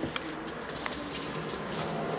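A pigeon cooing in short low notes, with a few faint clicks.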